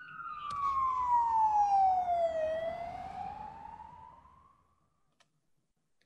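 Closing logo sound effect: a single pitched tone that glides down for about two and a half seconds, then rises again and fades away about four and a half seconds in.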